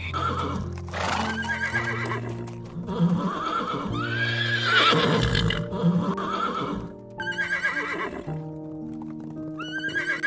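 Horses whinnying several times, the longest whinny rising and falling about four seconds in, with hoofbeats, over background music with steady held notes.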